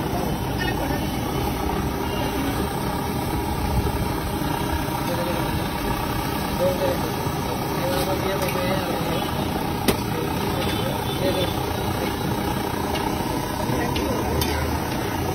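Steady low rumble of street background noise with faint voices of people nearby, and a single sharp click just before the ten-second mark.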